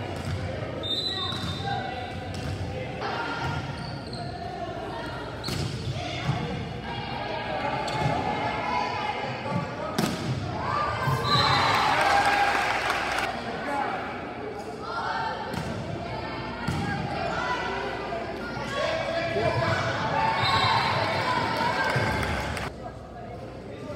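Volleyball being played in a reverberant gymnasium: sharp smacks of the ball being hit, several times across the rallies, under players calling out and spectators' voices. The voices swell into cheering about halfway through and again near the end.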